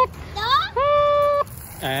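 A voice gives a rising squeal that levels off into a held high note for about half a second. Near the end comes a short spoken "nè".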